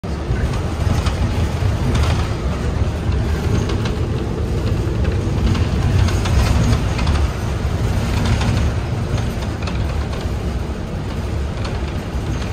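Cabin noise inside a moving city bus: a steady low rumble of engine and road, with occasional light rattles and clicks.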